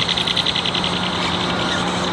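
Spinning fishing reel cranked to bring in a hooked fish, with fast, even clicking that fades out about half a second in. A steady low hum runs under it throughout.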